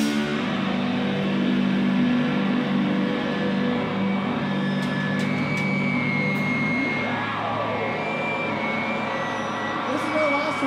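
Electric guitars left ringing and droning through their amplifiers without drums as a rock song winds down. A thin high feedback whine comes in about halfway through, and a sliding, swooping pitch follows in the last few seconds.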